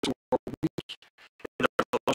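A man's speaking voice breaking up into short stuttering fragments with dead gaps between them, about six a second, with a longer dropout midway: glitching livestream audio.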